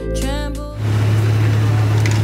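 Background music that cuts off under a second in, giving way to the steady low hum and noise of a running car heard from inside the cabin.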